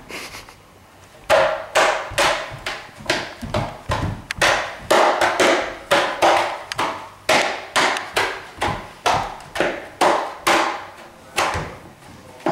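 A large ceramic vase struck by hand like a drum: sharp hits about twice a second, starting about a second in, each ringing briefly.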